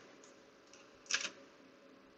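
A single short click of a computer keyboard key about a second in, over faint steady hiss.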